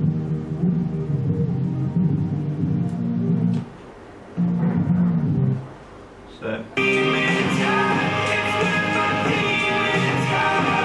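Recorded music played through a small test speaker from the Sony surround amplifier's subwoofer output: bass only, with no high tones, dropping out twice briefly. About seven seconds in it switches to a full-range channel and the whole song with guitar comes through.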